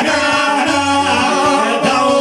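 Live Bosnian izvorna folk music: a man singing over a long-necked lute and an electronic keyboard, with a steady beat in the bass.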